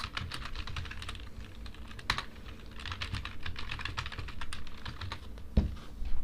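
Typing on a computer keyboard: quick runs of keystrokes, with one sharper key click about two seconds in and a dull thump near the end.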